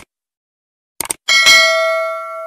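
Subscribe-button animation sound effect: a click, then two quick mouse clicks about a second in, followed by a notification bell ding that rings on and slowly fades.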